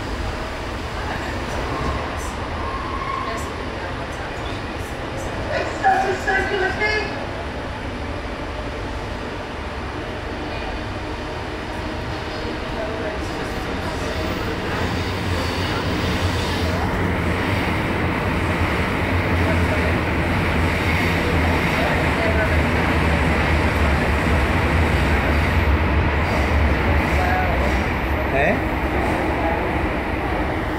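Passenger train running, heard from inside the carriage: a steady rumble and rush that grows louder about halfway through and stays louder to the end. A short voice-like call sounds about six seconds in.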